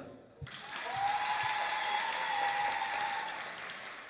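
Audience applauding: the clapping rises about half a second in, holds for a couple of seconds and then slowly dies away, with a faint steady high tone over it for a while.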